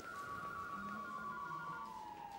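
Soft dramatic underscore: a couple of held high tones drifting slowly down in pitch over faint low notes.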